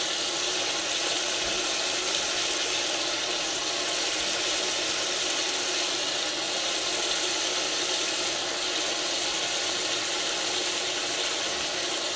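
Steady, even hiss of food cooking in an aluminium kazan on a lit gas stove, the onions and ribs frying gently under the layers.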